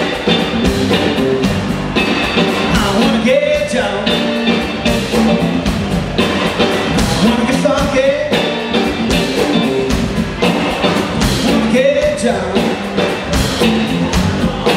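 Live blues band of electric guitar, electric bass and drums playing an instrumental passage with a steady beat. The lead guitar slides up into bent notes several times.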